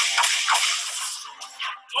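Film trailer soundtrack: music with a sudden loud, hissing swell that fades over about a second and a half.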